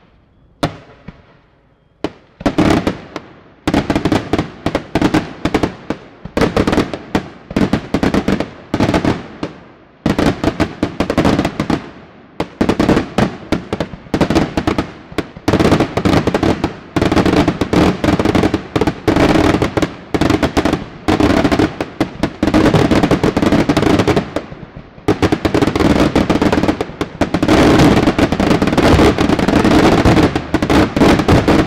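Daytime aerial fireworks: one or two single bangs in the first couple of seconds, then dense rapid-fire salvos of sharp reports with short lulls about twelve and twenty-five seconds in, growing densest toward the end.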